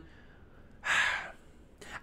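A man's single audible breath, drawn close to the microphone about a second in, with quiet room tone around it.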